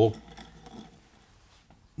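Quiet room tone with a few faint clicks of a steel hand tap being handled over a cast-iron engine block.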